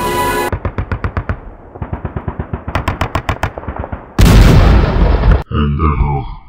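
Machine-gun fire sound effect: rapid shots at about eight a second for a few seconds, followed about four seconds in by a loud burst of noise lasting just over a second.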